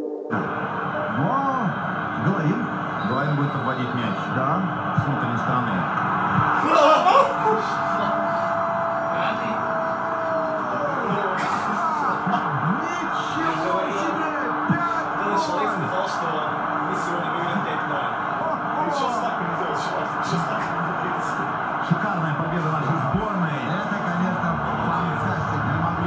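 Football stadium crowd heard over a TV broadcast: many voices shouting and chanting together, with a single held horn-like tone lasting about three seconds, starting some seven seconds in.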